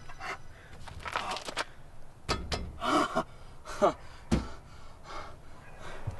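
A man's breathy gasps and pants and a falling, groaning cry, with two sharp thumps about two and four seconds in.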